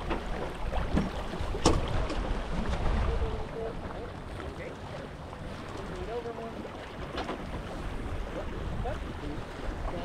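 Wind noise on the microphone and water washing along a small sailboat's hull as it sails under spinnaker, with a single sharp knock just under two seconds in.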